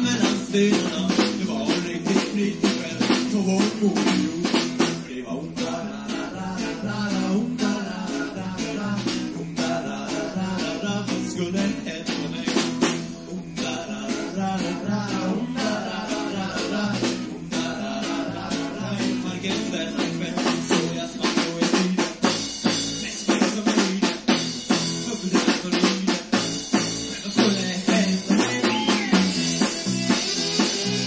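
Rock band playing live: drum kit with snare and bass drum, guitar and other instruments, recorded on a portable cassette recorder with a microphone. The drum hits grow sharper and more accented about two-thirds of the way in.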